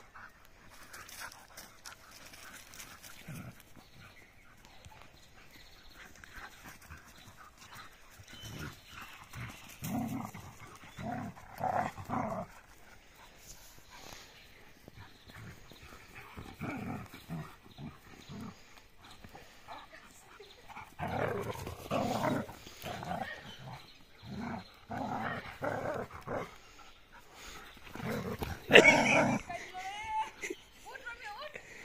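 Two dogs, a German Shepherd and a black dog, play-fighting, with irregular bursts of dog vocalising that grow louder and closer together in the second half, the loudest just before the end.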